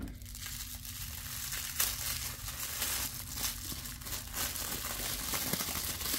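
Pink tissue paper being unwrapped by hand, crinkling and rustling continuously with many sharp little crackles.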